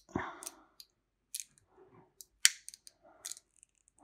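Needle-nose pliers crimping a metal wire terminal onto 12-gauge stranded wire: a handful of sharp little metal clicks and snaps, the loudest about two and a half seconds in.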